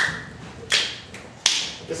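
Finger snaps keeping a slow, even beat: three sharp snaps, about one every three-quarters of a second.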